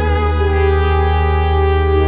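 Roland JD-XA synthesizer playing a sustained preset: a held low bass note under long synth chords, with the upper notes changing about half a second in and again near the end.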